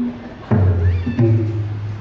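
Thai classical piphat ensemble music accompanying a khon masked dance: two low ringing strokes, about half a second and just over a second in, under a high wailing note that rises in pitch.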